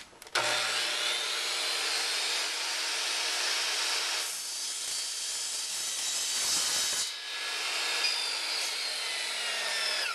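Ryobi miter saw starting suddenly and running, its blade cutting through soft aluminum angle stock. The sound is steady and loud, and it changes in texture about four seconds in and again about seven seconds in.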